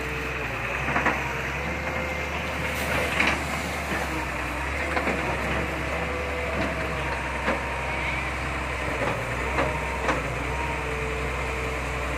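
Diesel engine of a barge-mounted excavator running steadily under load while the bucket is swung back and lowered into the river, with faint steady whining tones and a few light knocks.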